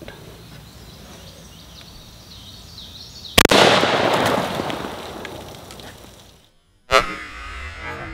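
A 12-gauge shotgun loaded with birdshot fires once about three and a half seconds in. Its report trails off over about three seconds. Near the end a second sharp bang comes as the target is hit.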